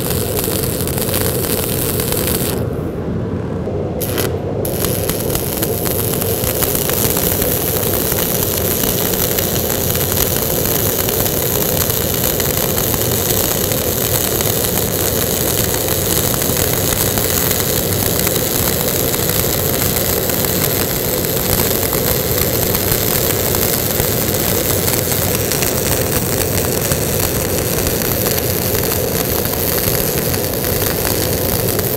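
Stick-welding (SMAW) arc from an E6013 fill-freeze electrode laying a fillet weld on a steel T-joint: a steady, loud frying crackle. The crackle thins out briefly about three seconds in, then runs on evenly.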